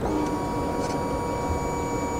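Kawasaki Ninja 300 with its ignition just switched on: a steady electric whine and hum as the fuel pump primes and the instrument cluster runs its start-up sweep.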